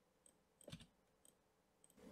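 Near silence with one faint computer mouse click about two thirds of a second in.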